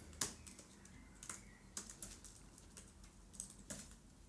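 Typing on a computer keyboard: about a dozen faint, irregularly spaced keystrokes.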